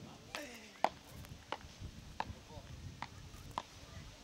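Beach tennis paddles striking the ball in a fast rally: a series of about seven sharp pocks, roughly one every two-thirds of a second, the loudest about a second in.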